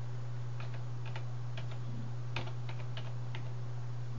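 Typing on a computer keyboard: about a dozen light, irregularly spaced key clicks as a number is entered, the sharpest a little past the middle, over a steady low hum.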